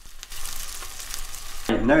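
Slices of black pudding sizzling in a dry frying pan, frying in the fat from the pudding itself, with a steady hiss and fine crackles. The sizzle comes in a moment after the start, and a man's voice cuts in near the end.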